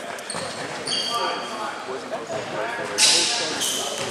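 Basketball sneakers squeaking in short chirps on a hardwood gym floor, several times, against the chatter of players in a large hall; a brief hissing burst comes near the end.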